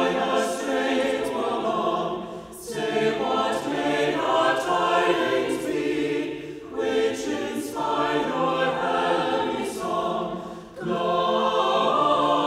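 A choir singing a Christmas hymn, in phrases of about four seconds with a brief pause for breath between them.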